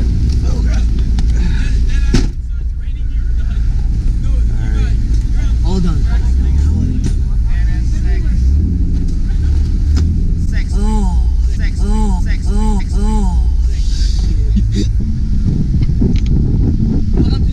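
Acura NSX's mid-mounted V6 idling in a low steady rumble, with one sharp click about two seconds in. Near the end a gull calls a run of about seven short rising-and-falling notes.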